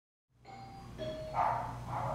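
Doorbell chime ringing: a short faint tone about a second in, then a louder ringing note from about a second and a half in, over a low steady hum.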